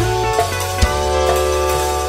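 Reggae band playing live through an instrumental passage: sharp drum kit hits over held chords and a low bass line that changes note about a second in.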